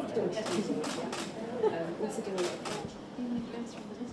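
Indistinct voices talking quietly in a room, with several short, sharp clicks scattered through.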